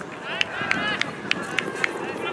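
Running footsteps striking at about three a second, with shouting voices from the players on the pitch.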